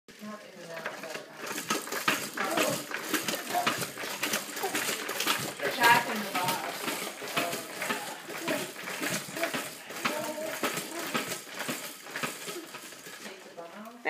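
A baby bouncing in a Jumperoo baby jumper: a busy, uneven clatter and rattle of its plastic seat, toys and frame, with the baby's wordless vocal sounds mixed in.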